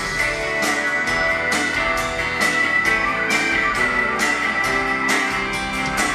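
Live rock band playing with electric and acoustic guitars, mandolin and keyboards over a steady drum beat.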